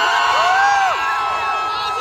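Large audience cheering and screaming, many high voices shrieking over one another in rising and falling cries.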